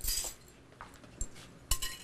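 A metal whisk and a glass mixing bowl of whipped cream being handled, giving a few light clinks, with the loudest cluster near the end.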